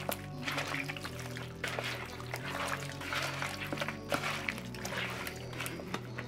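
Background music with a steady bass line, over faint wet squishing of hands kneading seasoned raw chicken in a bowl.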